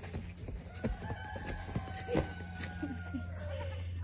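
A young goat kid bleating in one long call that sinks slightly in pitch at the end, with a few footsteps clicking on dirt.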